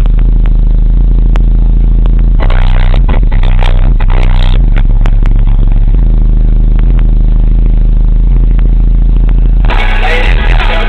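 RE Audio MX 12-inch car subwoofer in a ported box tuned to 36 Hz, playing very loud, deep bass notes from music that change in steps, with sharp clicks and rattles throughout. The sound is so loud it overloads the recording.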